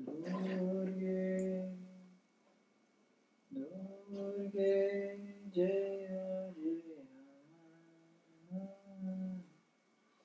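A man chanting a mantra solo in long held notes, in three phrases separated by short breaths.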